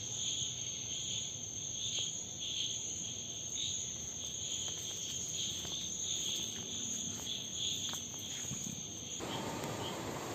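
Chorus of night insects, chirring steadily in two high-pitched tones, the lower one pulsing unevenly. It cuts off suddenly about nine seconds in.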